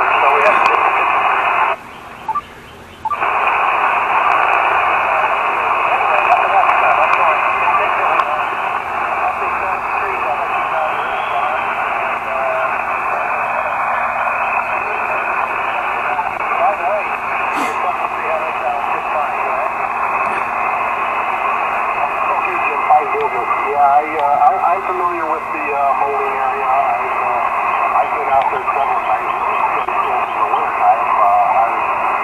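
Elecraft KX2 transceiver's speaker playing 20-metre sideband band noise: a steady, thin hiss with garbled, faint voices of distant stations coming through, clearest a little past the middle. The hiss cuts out for about a second, about two seconds in, while the radio's settings are being adjusted.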